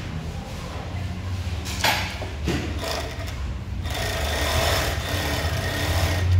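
Sewmac electronic industrial coverstitch machine with a built-in motor, stitching a strip of knit fabric with its three needles and top cover thread: a steady, soft hum, quiet for an industrial machine, getting louder over the last two seconds.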